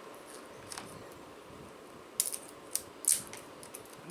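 A few short, sharp clicks and scrapes from a small hot sauce bottle being handled and its cap twisted open, the loudest about three seconds in, over quiet room tone.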